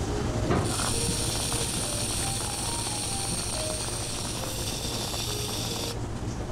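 Whipped-cream dispenser spraying cream onto an iced drink: a steady hiss and sputter that starts about half a second in and cuts off just before the end.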